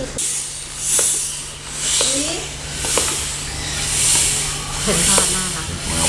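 Hand floor air pump worked in steady strokes, a hiss of air with a small click at each stroke, about once a second, as it inflates an inflatable roly-poly toy.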